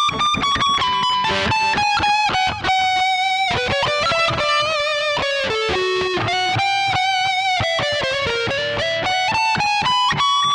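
Epiphone SG Special electric guitar playing a single-note lead line through an amp: quick runs of notes with a few held, sustained notes, the line dipping lower in the middle and climbing back up near the end.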